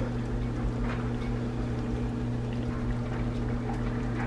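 A steady low hum runs throughout. Over it are soft wet sounds of a silicone spatula stirring linguine through a creamy sauce in a cast iron skillet.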